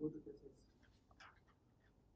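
Faint, distant speech: a student asking a question away from the microphone, in a quiet small room. There is a short, louder voiced sound right at the start.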